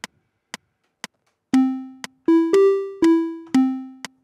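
Critter & Guitari 201 Pocket Piano synth playing a short five-note phrase from about a second and a half in: it steps up twice and back down to its starting note, each note fading away. The internal metronome ticks about twice a second throughout, as the phrase is recorded live into the sequencer.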